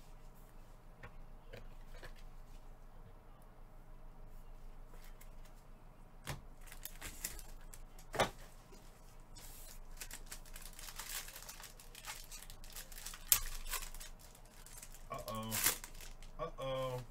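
Foil card-pack wrapping crinkling and being torn open by gloved hands. After a quiet start it crackles for several seconds, with two sharp snaps about eight and thirteen seconds in.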